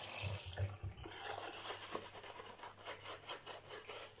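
Boar-bristle shaving brush worked over a lathered face, quick soft rubbing strokes at about four or five a second, starting about a second in. Water runs briefly at the start.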